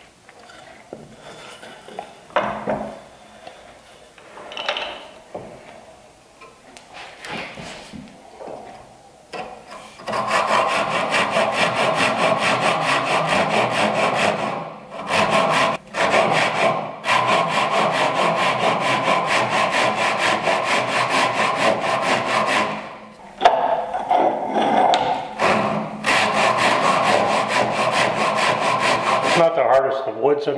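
Japanese Ryoba pull saw making a 45-degree cut through a small wooden workpiece. After about ten seconds of faint handling sounds come fast, continuous saw strokes, broken by a few short pauses.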